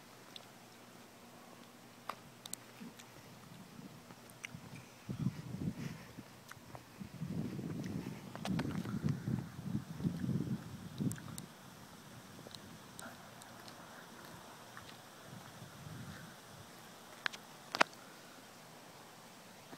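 Wind buffeting a phone's microphone: low, irregular rumbling gusts for several seconds in the middle, over faint background hiss, with scattered small clicks of handling.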